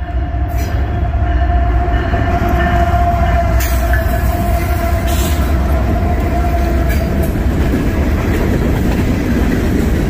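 Norfolk Southern diesel-hauled coal train passing close by: the locomotives rumble past, followed by a string of steel coal hoppers. A steady tone fades out about seven seconds in as the locomotives go by, and a few sharp clanks of wheels and couplers stand out above the rumble.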